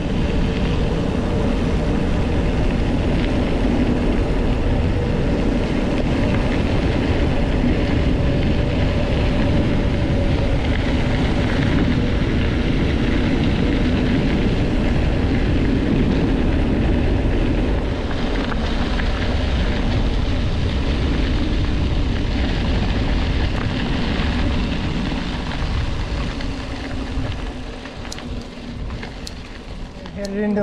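Wind rushing over the microphone of a handlebar-mounted camera, together with the bike's tyres rolling on a gravel road, as a loaded bikepacking bike rides fast downhill. The noise eases somewhat over the last dozen seconds.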